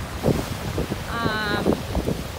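Sea waves washing over a rocky cobble beach, with wind buffeting the microphone. About a second in, a short, wavering high-pitched call sounds over the surf.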